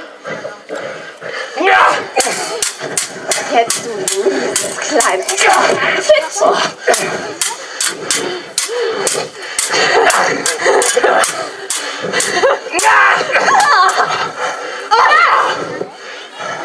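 Stage swords clashing again and again in a fencing fight, a rapid series of sharp metal clinks, with voices shouting between the strikes.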